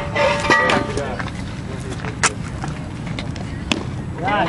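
A baseball pitch smacking into a catcher's leather mitt: two sharp smacks about a second and a half apart, the first the louder, over a steady low rumble. Voices and a held shout from the stands in the first second.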